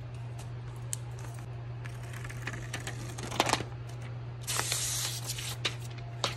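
Cardboard and paper packaging of an iPad mini box being handled: light taps and rustling, a louder clatter about three and a half seconds in, then a brief hissing slide of paper over cardboard near five seconds. A steady low hum runs underneath.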